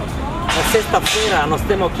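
Speech: a man talking, over steady low background noise.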